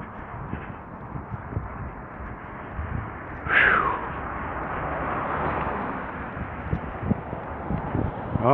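Steady street noise with soft regular footfalls while walking along a roadside. About three and a half seconds in, a short loud call slides down in pitch. After it, a swell of traffic noise rises and fades.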